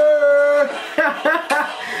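A man's drawn-out excited exclamation held on one pitch for just over half a second, followed by a few short voice bursts.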